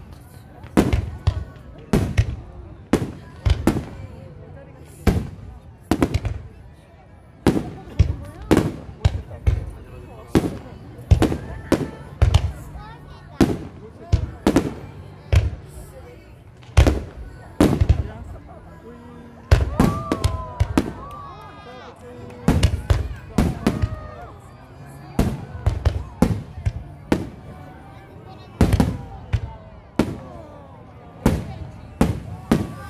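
Aerial firework shells bursting in rapid succession, about one to two sharp booms a second, each trailing off in an echo.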